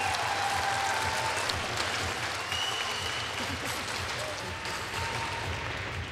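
Audience applauding, slowly dying down.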